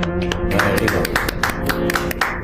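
Harmonium and tabla playing ghazal accompaniment: held harmonium notes under tabla strokes, with the harmonium dropping away about half a second in while a quick run of tabla strikes carries on.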